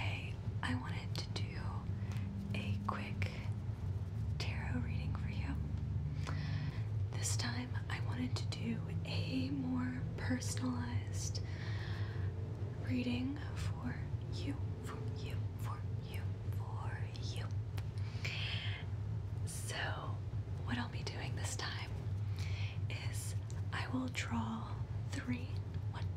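A woman whispering close to the microphone, in short phrases throughout, over a steady low hum.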